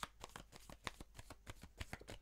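A tarot deck being shuffled by hand: a faint, irregular run of quick card flicks and clicks, several a second.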